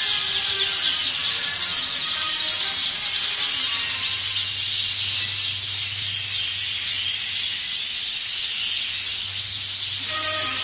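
A roomful of caged canaries singing and chirping all at once: a dense, high-pitched chorus of rapid trills, with a low steady hum underneath.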